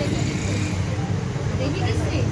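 Indistinct voices of several people talking at once, over a steady low rumble.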